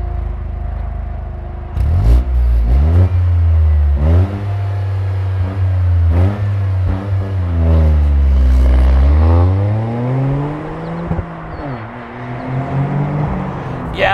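Toyota GR Corolla's turbocharged three-cylinder engine accelerating hard from about two seconds in. The engine note climbs and drops back several times as the gears are shifted up, then swoops down and up again and falls away near the end.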